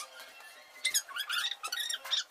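A child's voice pitched up into a high, squeaky chipmunk-like chatter, in short runs that rise and fall in pitch, starting about a second in.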